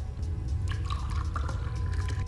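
Red wine poured from a bottle into a glass, a short gurgling pour about a second in, over a low, steady music bed.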